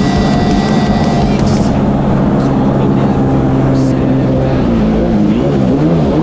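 1998 Kawasaki 750 SXI Pro stand-up jet ski's two-stroke twin engine running at a steady high speed. Near the end its pitch drops and wavers up and down as the motor bogs and nearly dies.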